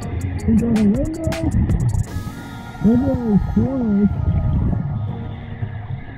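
Muffled, distorted voice of a scuba diver speaking underwater through the mask, in short wavering phrases near the start and about three seconds in, over a low rumble of water noise. Background music runs under it.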